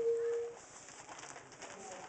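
A single short, steady cooing note, like a dove's coo, right at the start, then quiet room murmur.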